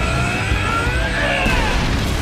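Energy-blast sound effect from an animated fight: a dense, loud rumble with a wavering, gliding whine over it, mixed with background music.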